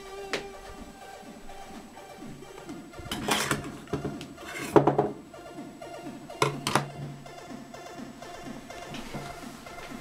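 A chiptune plays from a real 6581 SID sound chip in steady, stepped synth tones. Over it come several loud clattering handling noises, bunched near the middle, as bare circuit boards are picked up and moved.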